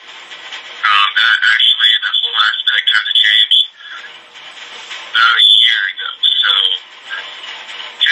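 A man talking in two stretches with a short pause between them. The voice sounds thin, with little bass, and the words are hard to make out.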